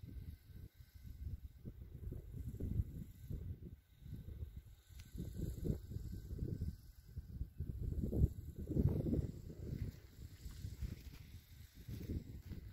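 Wind buffeting the phone's microphone: a low rumble that swells and fades in irregular gusts, strongest about eight to nine seconds in.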